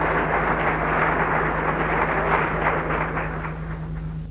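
A steady rushing noise over a low, even hum, fading a little near the end.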